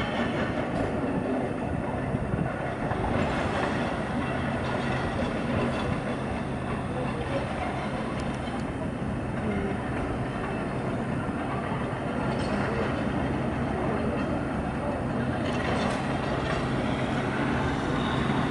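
Construction machinery on a building site running steadily: a continuous mechanical drone with a low hum and a few faint knocks.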